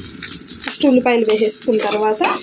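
A person speaking briefly, twice, over a steady sizzle of rice and chopped onions frying in a pan.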